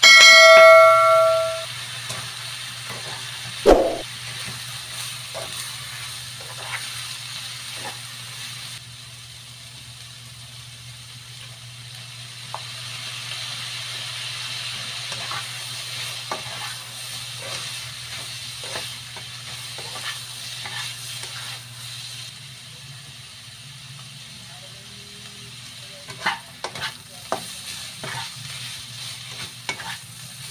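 Bitter gourd slices sizzling in a hot nonstick wok as they are stir-fried, with light scraping clicks of the spatula and a sharp clang about four seconds in. A bell chime, the loudest sound, rings at the very start for about a second and a half; it is the sound effect of the on-screen subscribe-button animation.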